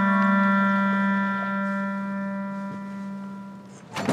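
Background score: a woodwind melody ends on one long low held note that slowly fades away. A sharp knock comes right at the end.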